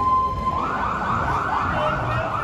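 A siren sounding: a steady tone that about half a second in switches to a fast yelp, rising sweeps repeating about three times a second, over low street noise.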